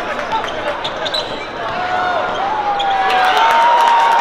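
Basketball being dribbled on a hardwood court, a run of sharp bounces, over arena crowd voices. From about halfway in a single voice holds one long call that grows louder.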